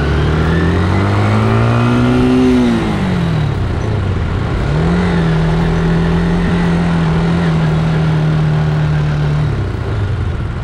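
Motorcycle engine heard while riding: the revs climb for about two and a half seconds, drop sharply as the throttle closes, then pick up again about five seconds in and hold steady until just before the end, over steady road noise.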